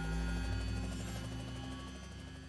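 Closing logo sting for a production company: a deep, sustained low drone with faint steady higher tones, slowly fading out.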